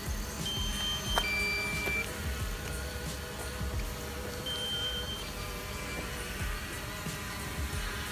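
Short electronic beeps: a falling two-tone beep about half a second in and another a little past the middle. They sit over soft, steady background music.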